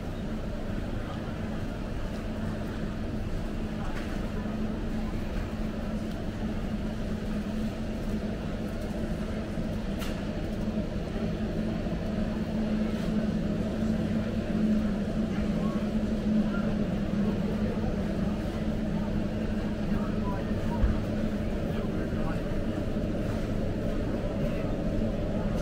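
Busy warehouse-store ambience: a steady low hum with indistinct voices of shoppers in the background and an occasional faint click or knock.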